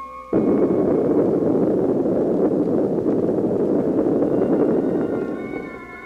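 A loud, steady rushing roar starts suddenly about a third of a second in, cutting off the music, and fades out near the end as music returns.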